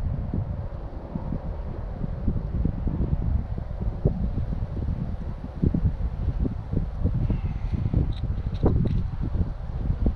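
Wind buffeting the microphone in a gusty low rumble, with scattered small knocks and scrapes from gloved hands working loose soil at a dirt-hole trap set, a couple of sharper clicks near the end.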